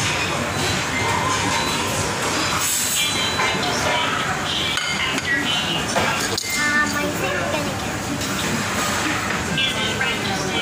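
Busy restaurant din of many voices chattering, with background music, and metal serving tongs clinking against a steel buffet tray about six seconds in.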